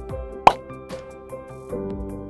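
Upbeat intro music with steady held notes, and a single short pop sound effect about half a second in, the loudest moment.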